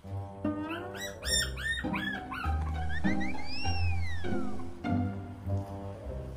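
Cheerful background music with a bass line. Over it come a run of short high yelp-like calls about a second in, and a long call that rises and then falls in pitch near the middle.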